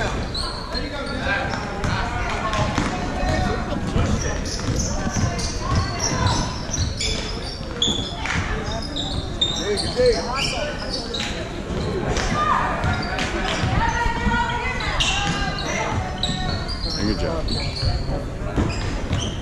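Basketball game sounds: the ball bouncing on a hardwood court amid background voices of players and spectators, echoing in a gymnasium.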